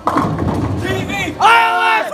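Several people shouting and cheering, starting suddenly, with one loud yell held through the last half second.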